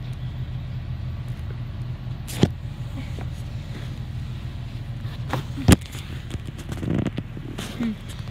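Steady low rumble of a bus's engine and road noise heard from inside the cabin, with two sharp knocks, one about two and a half seconds in and a louder one at about five and a half seconds.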